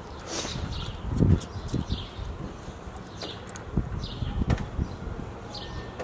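Outdoor street ambience: birds chirping on and off, with low thumps and rumble that peak about a second in.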